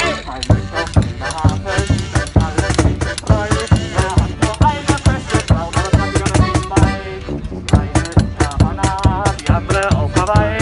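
Small acoustic band playing a sea-shanty style song: accordion and tuba over a steady beat, with a man singing through a brass megaphone horn.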